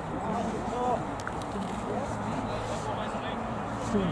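Distant voices of rugby players and spectators calling out across the pitch, over a steady background noise.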